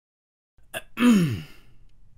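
A man's breathy, voiced sigh, about a second in, falling in pitch over half a second, just after a short click.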